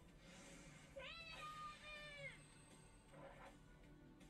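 Faint anime soundtrack: a high-pitched female voice holds one drawn-out call about a second in, over quiet background music.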